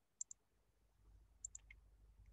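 Near silence broken by two pairs of faint, short high clicks, the second pair about a second after the first.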